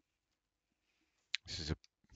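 Near silence, then a single sharp click about two-thirds of the way in, followed at once by a brief sound of a man's voice.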